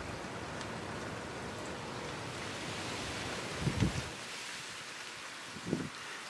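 A steady, even outdoor background hiss with no clear source, and two soft low bumps, one about four seconds in and one near the end.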